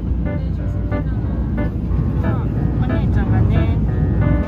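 Steady low rumble of a moving train heard from inside the carriage, with voices over it.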